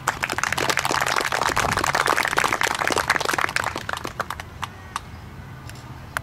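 Audience applauding, dense clapping that dies away to a few scattered claps about four seconds in.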